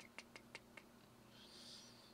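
Near silence: a faint steady hum, with a quick run of about five faint clicks in the first second and a faint soft hiss near the end.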